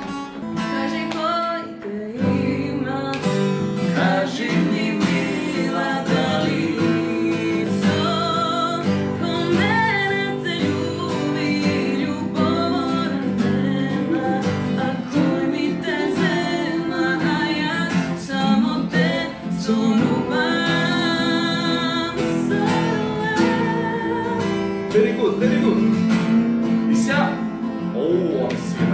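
Acoustic guitar strummed in chords with singing over it, the guitar coming in about two seconds in.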